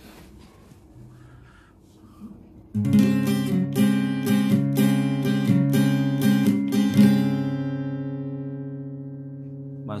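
Yamaha APX 500 II acoustic-electric guitar: a chord played in quick repeated strokes, about three a second, starting about three seconds in. The last chord is left to ring and fade away.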